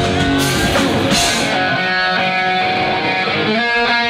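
Rock band playing live, with electric guitars and drums; about a second and a half in the drums drop out, leaving the guitars ringing on alone.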